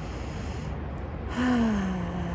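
A woman's deep breath in, a brief hold, then a slow voiced sigh out with falling pitch, beginning about one and a half seconds in: a deep breath taken in a breathing exercise.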